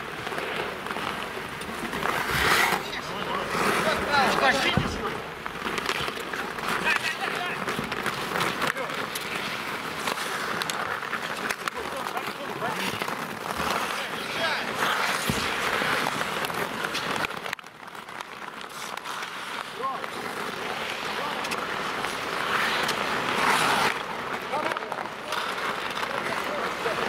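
Ice hockey play on an outdoor rink: players shouting and calling out over the scrape of skates on the ice, with a couple of sharp knocks from sticks and puck.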